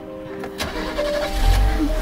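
A car engine starts and runs with a low rumble from about halfway through, over background music, with a sharp click shortly before it.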